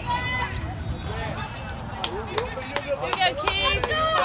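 Softball players calling out and cheering in high-pitched voices, chatter without clear words, with several sharp claps in the second half.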